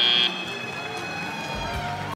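The end-of-match buzzer sounds a steady, high electronic tone that cuts off abruptly a fraction of a second in, signalling that the match is over. After it, a quieter crowd and hall noise remains in the large arena.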